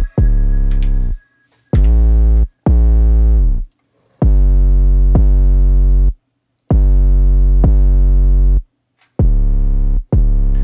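Heavy 808 bass playing on its own: a bassline of long, deep notes that shift pitch from note to note, several re-struck partway through, with short silences between them.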